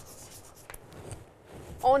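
Chalk scratching and tapping faintly on a chalkboard as a short word is written.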